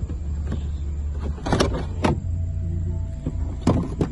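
Electric trunk lid of a Mercedes-Benz E-Class opening: a steady low motor hum with sharp latch and mechanism clicks, and a thin whine about two seconds in.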